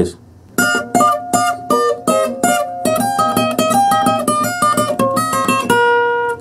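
Acoustic-electric guitar with a capo at the third fret picking a bachata lead line in single notes. The run starts about half a second in, grows quicker after about three seconds and ends on a held note.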